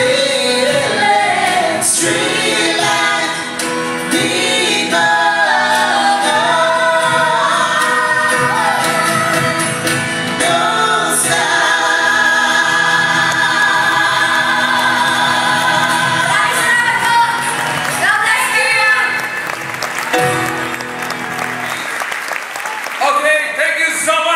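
Live band and several vocalists singing a closing ballad in harmony, with long held notes, heard from among the audience in a large hall. The music ends about nineteen seconds in and the audience breaks into applause.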